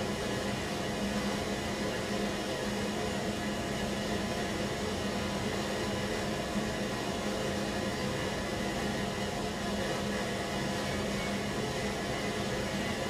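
Steady background noise: an even hiss with a constant low hum, unchanging throughout.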